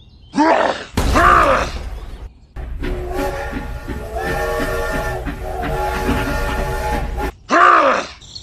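Two short, strained effort groans, dubbed in as a sound effect for a figure heaving up a toy locomotive. They are followed by a held, steady chord of several seconds with a regular pulse beneath it, which stops abruptly, and then one more groan near the end.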